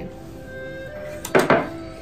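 Background music with steady held notes. About a second and a half in comes a short double knock, a small ceramic bowl set down on the counter.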